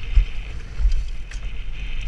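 Wind buffeting the microphone in surges of low rumble as a downhill mountain bike rolls fast over a dirt forest trail, with tyre noise and a few sharp rattles from the bike.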